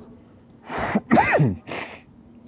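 A man's loud, breathy gasp, then a short vocal cry that falls in pitch, ending in a breathy exhale.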